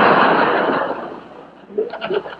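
Studio audience laughing at a punchline, loud at first and dying away over the first second and a half.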